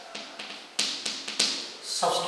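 Chalk tapping and scraping on a blackboard as a word is written, a quick series of sharp taps and short strokes.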